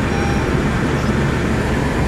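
Honda BR-V driving on a sandy beach: a steady rumble of engine, tyres and wind noise.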